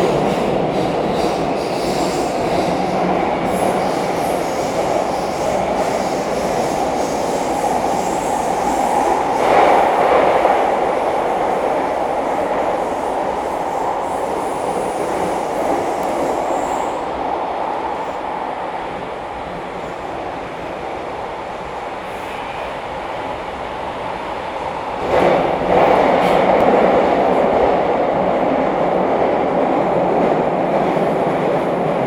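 Bucharest Metro train in motion, heard from inside the passenger car: a continuous running rumble of the car on the track. It swells briefly about ten seconds in, eases off in the middle, then rises sharply again near the end.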